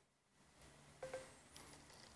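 Near silence: room tone, with a faint short electronic blip about a second in, while Google voice search is open and listening on the phone.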